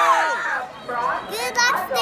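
A group of children shouting a cheer, one long held shout that falls away and stops within the first half second, followed by a child's high-pitched voice starting to talk near the end.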